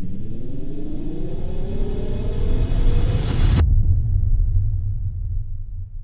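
Cinematic intro sound effect: a rising riser over a deep rumble, building in pitch for about three and a half seconds and cutting off abruptly, leaving the low rumble to fade away.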